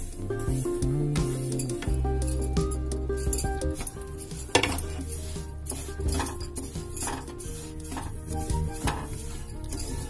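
Background music with held notes and a bass line, over a spatula stirring sesame seeds as they dry-roast in a non-stick kadhai, with a few sharp knocks of the spatula on the pan, the loudest about halfway through.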